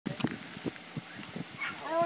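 Racing greyhounds in the starting boxes giving several short barks, then a drawn-out whine that rises and falls in pitch near the end: the excited calling of dogs waiting for the start.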